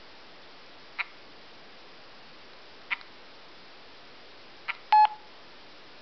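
Touchscreen mobile phone giving a short click with each tap as its menus are navigated, three clicks spaced a second or two apart, then a louder brief electronic beep about five seconds in.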